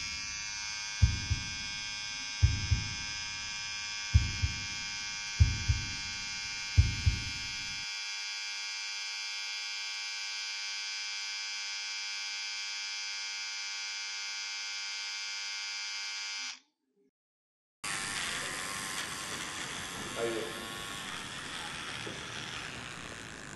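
A steady high buzz carries five evenly spaced paired low thumps, like a heartbeat, over the first seven seconds. It cuts off abruptly about 16 seconds in, and after a second of silence electric hair clippers run as they shave a strip through hair near the end.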